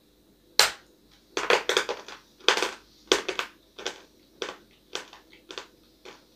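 A bite into a chunk of hard, dry edible clay, with a sharp crack about half a second in. It is followed by crunching chews, roughly two a second, that grow fainter as the piece breaks down.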